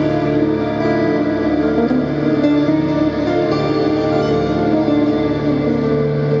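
Live instrumental music from two acoustic guitars played together, a steady run of sustained, ringing notes.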